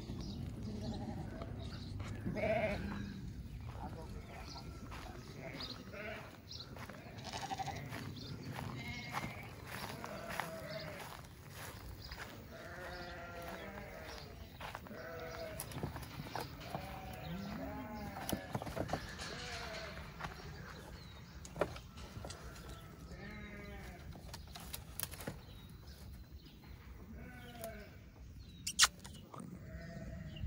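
A flock of sheep and goats bleating, many calls overlapping and thickest through the middle stretch. A single sharp knock stands out near the end.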